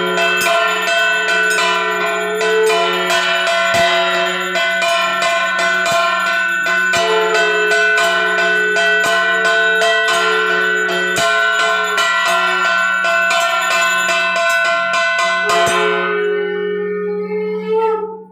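Puja hand bell rung rapidly and continuously over a steady low tone. The ringing stops about two seconds before the end, leaving the held tone to fade out.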